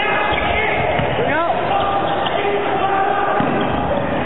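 Indoor volleyball rally in a sports hall: the ball being struck and hitting the floor, with players' shouts over steady crowd noise. A short rising call or squeak comes about a second and a half in.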